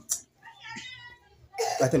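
Mostly speech: a man talking, loud from about one and a half seconds in. Just after the start there is one short, sharp breathy burst, and in between there is fainter voice sound.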